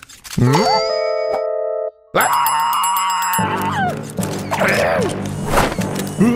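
Cartoon sound effects and music: a short rising glide into a ringing chime, then after a brief gap a loud held wail that drops off, followed by wordless groaning from a dazed, crying character.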